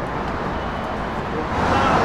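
Road traffic on the bridge overhead, a steady rush of tyre and engine noise that swells louder about a second and a half in.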